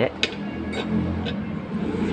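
Background music, with three light clinks of a fork and spoon against the plate as the sisig is mixed: one just after the start, then two more about half a second apart.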